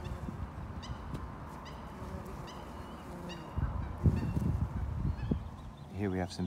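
A goose honking repeatedly: about six short, evenly spaced calls a little under a second apart, over a low rumble that grows louder from about midway.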